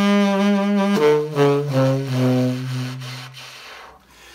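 Tenor saxophone played with a soft, breathy subtone in its low range: a held note, then a short phrase stepping down to a long low note that fades away near the end.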